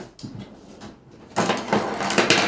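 Rummaging among supplies under a worktable to pull out a paint roller: a rustling, knocking clatter of handled objects, starting about one and a half seconds in.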